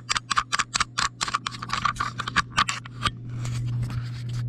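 Fingers handling a GoPro camera right at its microphone as it is taken off a chest-harness mount: a fast run of sharp scratchy clicks, about six to eight a second, that eases into a softer rustle about three seconds in. A steady low hum runs underneath.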